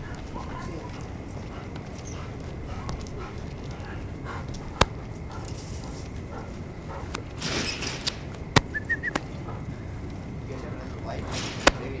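Footsteps on a concrete walkway, with a few sharp clicks and a short high three-note chirp a little past the middle.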